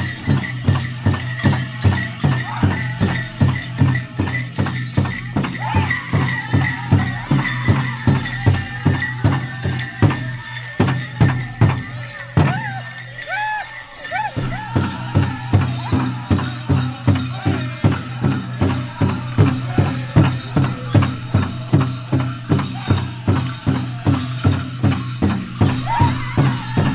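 Powwow drum music: a steady drumbeat a little over two beats a second with singing, and the jingling and rattling of dancers' bells. The beat eases briefly about halfway through, then picks up again.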